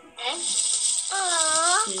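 A shaker-like rattle sound effect, joined in its second half by a short, high voice-like tone that dips and rises.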